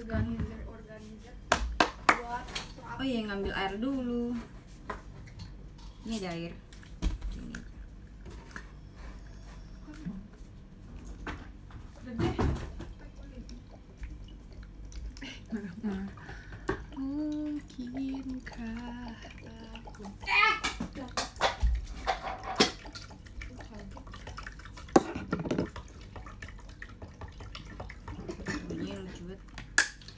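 Water being poured into a pot for boiling, with clatter and knocks of kitchenware being handled, amid low voices.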